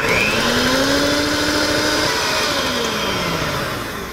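Electric hand mixer starting up and beating a thick cream cheese mixture in a glass measuring jug. Its motor whine rises in pitch as it gets going, holds, then drops in pitch and eases off over the last couple of seconds.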